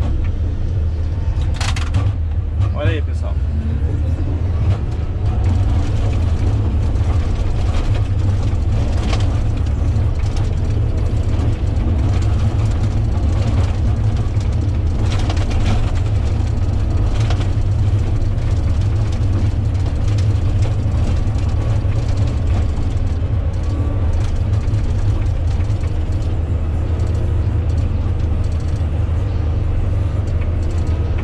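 Komatsu GD655 motor grader's diesel engine running steadily under load, a loud, even low drone heard from inside the cab while the blade grades the dirt road.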